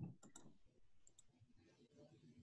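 Faint computer mouse clicks over near silence: two quick pairs of clicks about a second apart.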